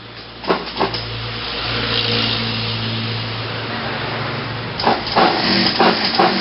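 Industrial sewing machine running while stitching cotton fabric: a steady low motor hum with a whirring hiss over it. There are two sharp clicks near the start and a quick run of clicks and knocks near the end.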